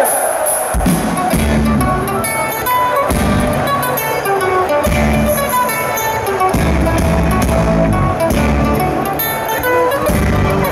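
Rock band playing live over a stage PA: the song starts about a second in, with electric guitar and bass guitar carrying the opening.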